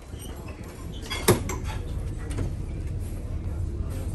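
A heavy door's push-bar latch clunks once about a second in, over a steady low rumble.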